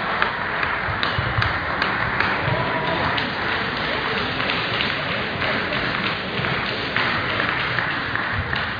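Table tennis hall ambience: scattered sharp taps of celluloid balls on tables and bats over a steady murmur of crowd chatter.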